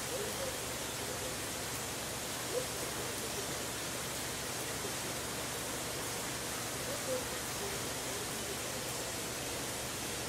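Steady outdoor background hiss, with a few faint short calls about two and a half and seven seconds in.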